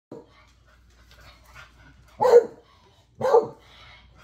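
A beagle barks twice, two short loud barks about a second apart, after a brief faint one at the very start.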